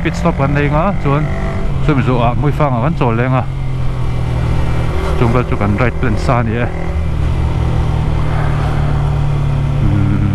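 Yamaha sport motorcycle engine running steadily while riding. A man's voice talks over it for the first few seconds and again briefly past the middle.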